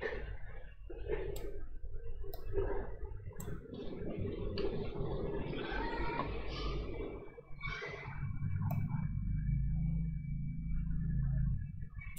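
Steady low room hum with a few sharp computer-mouse clicks, three about a second apart in the first few seconds and one more later.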